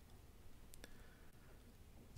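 Near silence: room tone with two faint clicks close together a little under a second in, from a stylus on a drawing tablet as an integral sign is written.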